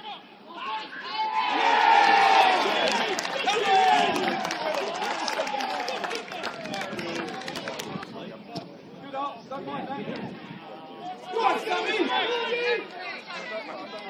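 Many voices shouting and cheering at once as a goal goes in, loudest in the first few seconds and then thinning out into scattered shouts, with another burst of shouting near the end.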